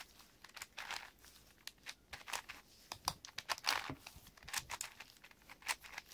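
Layers of a large 8x8x8 Rubik's cube being turned by hand: irregular plastic clicks and scraping as the pieces slide and snap into place, several a second.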